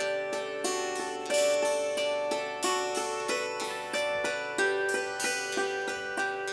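Hammered dulcimer playing an instrumental melody with acoustic guitar accompaniment: struck notes, about three a second, each left to ring on.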